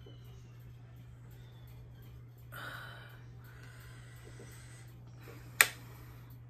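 Steady low hum under a quiet room, with a person breathing: a short audible breath a little under halfway through, then a fainter, longer one. Near the end there is a single sharp click, the loudest sound.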